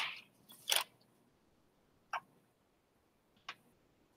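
A deck of playing cards being handled: the end of a shuffle dies away at the start, then three short card snaps, just under a second in, about two seconds in and a little past three seconds.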